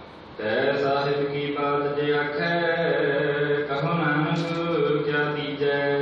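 Devotional chanting of Sikh simran: voices intoning long, held notes that glide between pitches. It starts suddenly about half a second in, with a short break for breath near the end.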